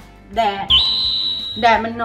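A high, steady whistle-tone sound effect held for just under a second, starting with a quick upward slide and cutting off sharply.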